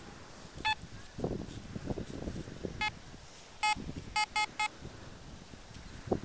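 Fisher F22 metal detector beeping as the coil sweeps over a buried metal target: about six short, high beeps, the last three in quick succession. Hand scraping through sand in between.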